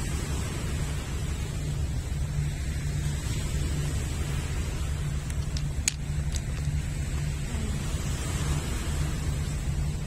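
Wind buffeting the microphone over the steady wash of small waves breaking on a pebble shore, with a few brief clicks near the middle.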